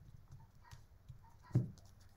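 Light taps and one sharper knock about one and a half seconds in, from tarot cards being handled on a desk.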